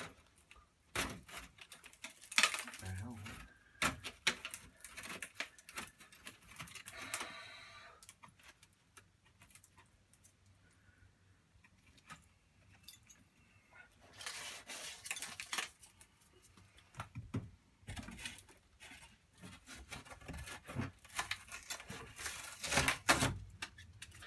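Irregular scraping, clicking and light metallic rattling as old wall lining and a thin sheet of tin are prised and pulled off an old timber beam by hand and with a hand tool. The sounds come in short clusters with quieter gaps between them.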